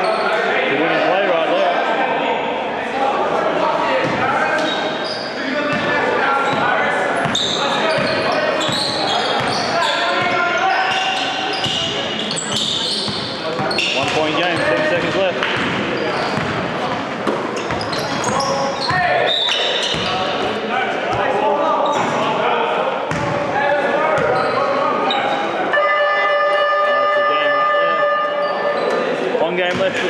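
Basketball bouncing on a wooden gym floor amid indistinct players' and onlookers' voices echoing in a large hall. Near the end a steady buzzer sounds for about three seconds, the scoreboard horn marking the end of the game.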